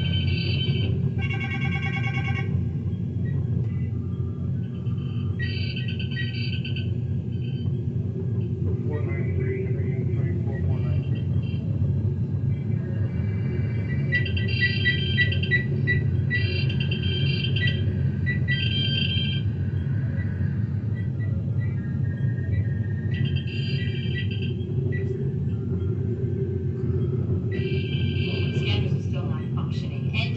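Sci-fi starship bridge sound-effect ambience played through computer speakers: a steady low engine hum, with clusters of short electronic console beeps and chirps recurring every few seconds.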